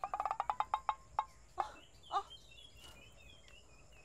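A turkey gobbling: a quick rattling run of notes that slows and stops after about a second. Small birds chirp faintly afterwards.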